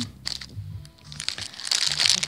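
Plastic food packaging crinkling as it is handled: a film-wrapped block of cheese and bags of gummy candy. The crinkling is loudest from about one and a half seconds in.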